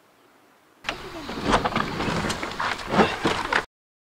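A motorcycle engine starting and running for about three seconds, with uneven sharp pulses, then cut off abruptly.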